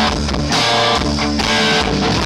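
Live punk rock band playing: electric guitar strumming over bass and a steady drum beat, loud.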